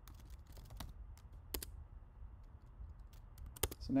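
Typing on a computer keyboard: scattered key clicks at an uneven pace, with a quick run of keystrokes near the end, over a faint low hum.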